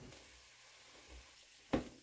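Very quiet kitchen sound with a single sharp knock near the end: a cooking utensil striking a frying pan while diced red peppers and ground beef are being stirred in.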